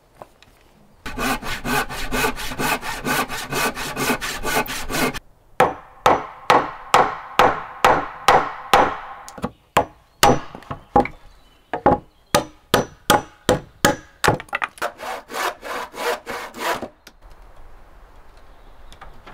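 Hand saw cutting across a wooden board: a quick run of short strokes for about four seconds, a brief pause, then slower, harder strokes about two a second that stop a second before the end.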